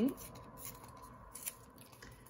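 Paper torn by hand in a few short rips, with rustling as the scrap is handled.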